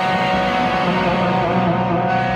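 Stratocaster-style electric guitar holding long sustained notes, a high note ringing over lower ones, its pitch wavering slightly about three-quarters of the way through.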